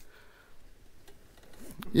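A quiet pause with a couple of faint light clicks, and a voice starting up near the end.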